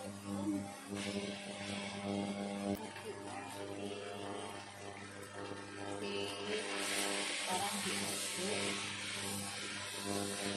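Stir-fry sizzling in a wok while a wooden spatula tosses tofu, greens and rice vermicelli, over a steady hum. The sizzle gets louder and hissier about two-thirds of the way in.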